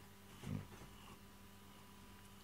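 A cat makes one short, low vocal sound about half a second in; otherwise faint room tone.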